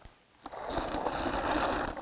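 Blueberries tipped from a wooden berry picker into a plastic-bag-lined bucket: a dense rattle of falling berries that starts about half a second in and runs on for about a second and a half.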